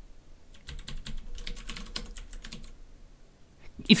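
Typing on a computer keyboard: a quick run of keystrokes lasting about two seconds, starting just under a second in.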